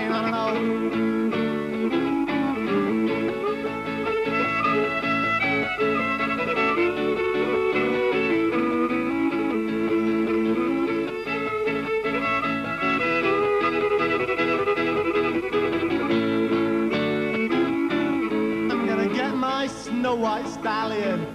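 Fiddle and strummed acoustic guitar playing an instrumental break of a folk-rock song. The fiddle carries the melody in held bowed notes over the guitar's steady strumming.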